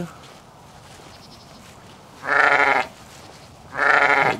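A sheep bleating twice: two loud, wavering bleats about a second apart, the second starting near the end.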